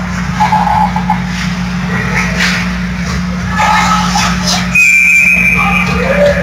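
Ice hockey referee's whistle: one steady, high-pitched blast of about a second, starting about five seconds in, which stops play. Under it are a steady low hum and spectators' voices.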